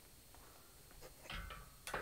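Metal knocks from a galvanised steel boat-trailer drawbar and its locking pin being handled: quiet at first, then a dull knock with a brief ring a little past halfway, and a sharp ringing clink at the end.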